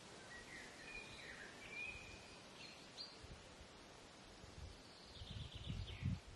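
Faint outdoor ambience over a steady hiss: a few short, high bird chirps in the first three seconds, then irregular low rumbling bumps near the end.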